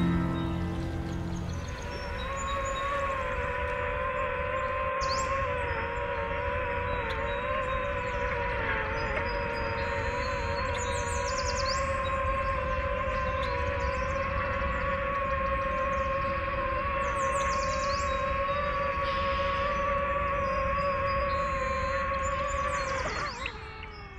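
Quadcopter drone's electric motors and propellers giving a steady, slightly wavering whine while it hovers low. Near the end the whine glides down in pitch and dies away as the motors spin down. Birds chirp now and then above it.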